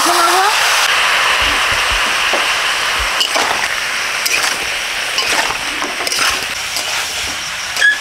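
A splash of water hitting hot oil and spices in a wok hisses and sizzles loudly, the sizzle slowly dying down. A metal spatula scrapes and clinks against the pan now and then as the pieces are stirred.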